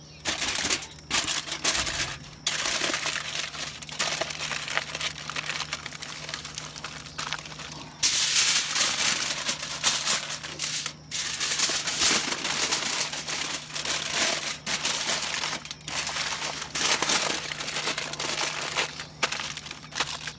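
Aluminum foil crinkling and crumpling in irregular bursts as it is folded and crimped tightly around a smoked beef chuck roast, loudest from about eight seconds in.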